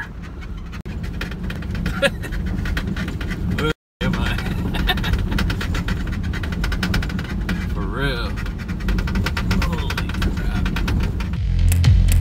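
Truck driving on a gravel road, heard from inside the cab: a steady rumble of engine and tyres with many small clicks of gravel under the wheels. Rock music comes in near the end.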